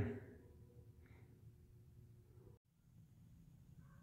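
Near silence: faint room tone with a low hum, briefly dropping out completely about two and a half seconds in.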